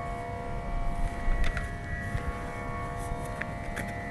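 A steady drone of several held pitches, with a few faint clicks, until speech resumes near the end.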